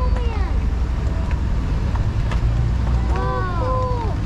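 Steady low rumble of a car driving slowly, heard from inside the cabin. Short wordless voice sounds rise and fall right at the start and again in the last second.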